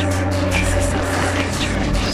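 Electronic tekno music from a live set: sustained synth drones, with a deep bass line coming in about half a second in.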